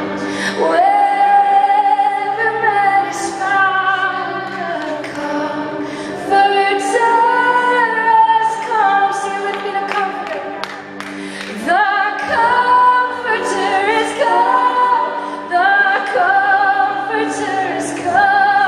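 Live worship singing of a traditional revival hymn, a woman's voice to the fore, in long held notes with vibrato. The singing eases briefly about two-thirds through, then swells again.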